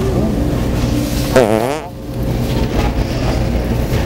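A short fart noise from The Pooter fart-noise toy about a second and a half in, wavering rapidly and falling in pitch. It plays over a steady low background hum.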